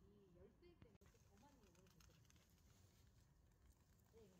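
Near silence: faint outdoor background with faint voices in the distance and a single soft click about a second in.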